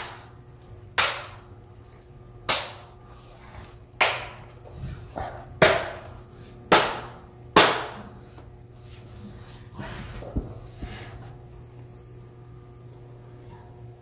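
Bottom cover of an Asus ROG Strix GL702VM laptop being snapped back onto the chassis: a string of sharp clicks, about six in the first eight seconds, as its clips seat one by one, then a few faint clicks and quiet handling.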